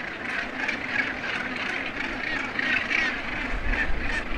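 Northern gannet colony calling: a steady din of many overlapping harsh calls from a crowd of birds.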